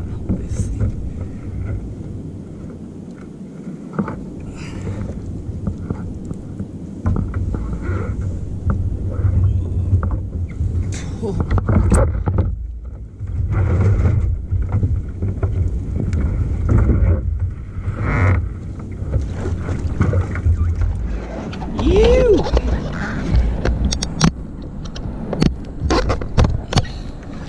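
Wind buffeting the microphone in gusts and water slapping against a plastic fishing kayak, with scattered knocks and rustles as a large fish is handled on deck.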